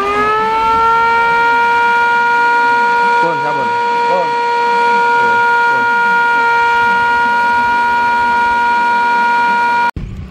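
Level-crossing warning siren at the guard post. It winds up in pitch for about a second, then holds one loud, steady tone until it cuts off abruptly near the end.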